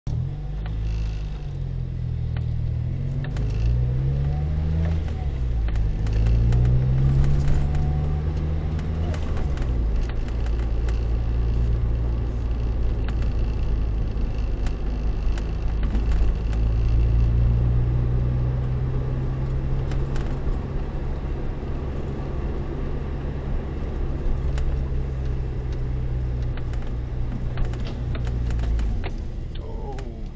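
Car engine and road noise heard inside the cabin. The engine note rises and falls three times in the first nine seconds or so as it accelerates through the gears, then holds steady while cruising.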